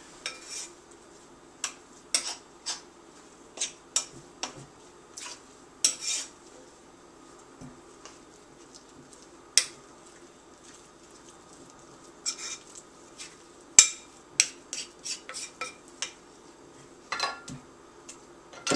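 Metal spoon clinking and scraping against a ceramic mixing bowl while stirring a thick flour-and-water bread dough, in irregular strokes with a quieter stretch in the middle and one loud clink about two-thirds of the way through.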